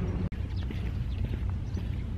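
Wind rumbling on the microphone in open air by the sea, with faint light clicks and ticks over it. The sound drops out for an instant just after the start.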